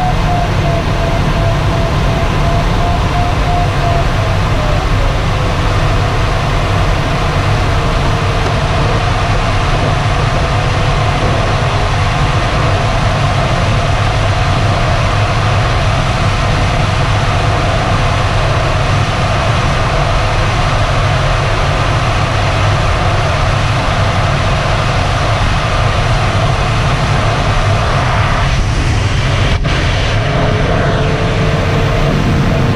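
Steady rushing airflow in a DG-800 glider's cockpit, heaviest in the low end. Over it, the variometer's audio tone beeps at first, then falls to a lower, steady tone as the glider leaves the climb. A single click comes near the end.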